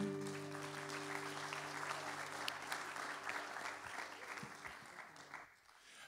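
Applause from a congregation, with the last strummed acoustic guitar chord ringing on beneath it and fading. The clapping dies away about five seconds in.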